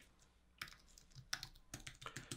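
Faint typing on a computer keyboard: a scattering of keystrokes beginning about half a second in, coming quicker in the second half.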